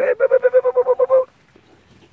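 A person's rapid, high-pitched repeated call to the puppies: about a dozen quick pulses on one steady note over a little more than a second, then stopping abruptly.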